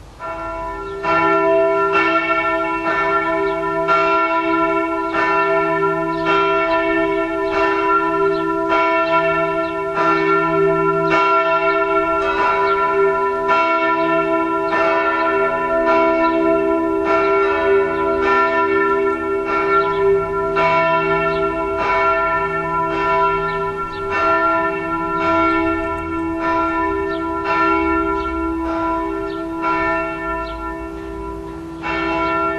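Växjö Cathedral's swinging church bells start ringing about a second in, with strokes a little over once a second and long ringing tones. A second, lower-sounding tone joins about twelve seconds in, as another bell starts.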